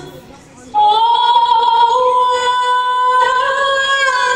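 Fireworks-show soundtrack music. After a brief lull, a woman's singing voice comes in and holds one long high note, lifting slightly near the end.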